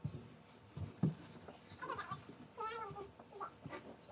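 A few short, high-pitched wordless vocal calls, following a couple of low bumps in the first second.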